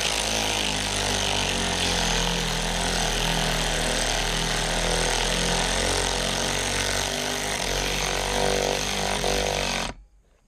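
WorkPro 3/8-inch cordless ratchet running continuously with its socket on a bracket bolt. It cuts off suddenly at the end.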